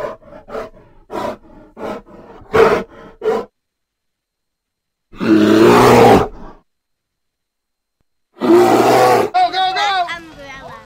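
Two loud roar sound effects, one lasting about a second and a half starting about five seconds in, the other about a second long starting about eight and a half seconds in. Before them come about three and a half seconds of short, evenly spaced music hits.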